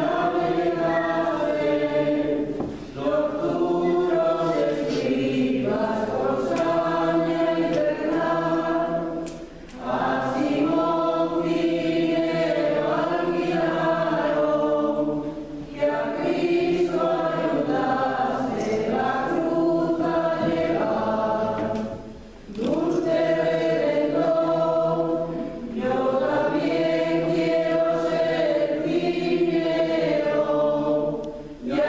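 A choir singing a slow hymn in long, sustained phrases, each broken by a short breath pause, in a church.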